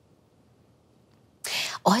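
Near silence: room tone, then a woman begins speaking in a low, breathy voice about a second and a half in.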